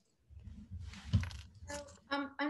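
An 18-carat gold necklace of enamelled leaves jingling and rustling as it is shaken in the hands close to the microphone, with a rumble of handling and one louder clink about a second in. A voice starts near the end.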